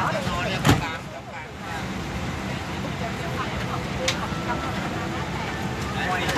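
Boeing 777-300ER cabin during boarding: a steady hum of the air system with other passengers' voices in the background. A sharp click comes just under a second in, and a fainter one about four seconds in.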